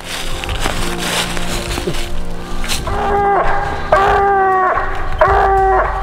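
Treeing Walker coonhound barking treed, from about halfway in: three long, steady-pitched barks about a second apart, the sign that it has the raccoon up the tree.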